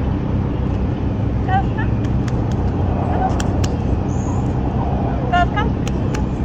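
Steady low rumble of road traffic and vehicle engines, with a couple of brief faint voice sounds about one and a half seconds in and near the end.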